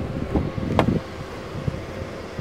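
A pickup truck's driver door being opened: handling noise, one sharp latch click just under a second in, then a steady low hum.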